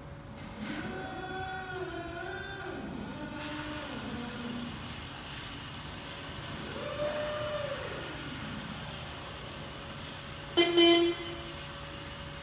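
Motors of a Yale NTA0305B electric narrow-aisle truck whining, rising and falling in pitch through the first few seconds and again in the middle. Near the end comes a short, loud beep of its horn.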